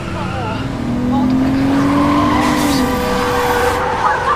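Car engine revving as the car is driven hard. Its pitch climbs steadily, then drops away about three seconds in.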